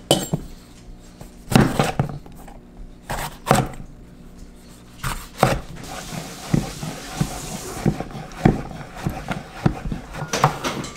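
Kitchen knife slicing through a zucchini onto a wooden cutting board: about a dozen sharp knocks at an uneven pace, roughly one a second.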